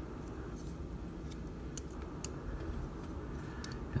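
A handful of faint, scattered clicks from the plastic joints and parts of a small Iron Factory transforming robot figure being turned and folded by hand, over a steady low hum.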